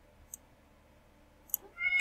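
A domestic cat meowing once near the end, a single rising call. Before it there are a couple of faint clicks against near silence.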